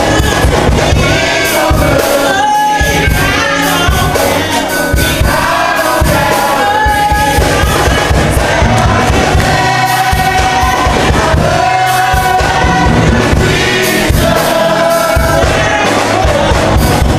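Youth gospel choir singing together, voices holding long notes and sliding between pitches, over instrumental accompaniment with a steady beat.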